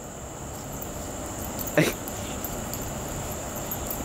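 Steady high-pitched chirring of crickets, with one short yip from a Siberian husky about two seconds in.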